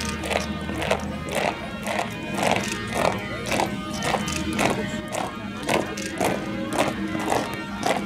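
Guards' boots striking the paving in step as a formation marches, a sharp footfall about twice a second, over music with sustained tones.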